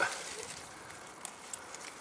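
Quiet outdoor background with a few faint, short clicks about a second and a half in, the kind made by hands handling a young rootstock.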